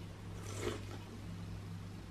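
A person taking a sip of Dr Pepper soda from a can and swallowing, heard as one short noisy gulp about half a second in, over a steady low hum.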